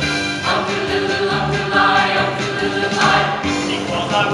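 Show choir singing a song in harmony with accompaniment; the chord swells louder about half a second in.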